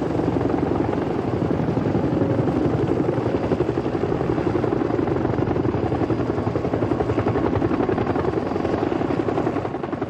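Several Bell UH-1 Huey helicopters flying low, their two-bladed main rotors beating in a steady, rapid chop.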